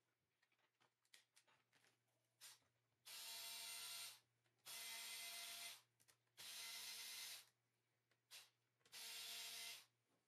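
Motorized desoldering gun's vacuum pump running in four bursts of about a second each, a hiss with a steady motor whine, sucking solder from the pins of suspected shorted diodes on a TV power-supply board. Small handling clicks come before and between the bursts.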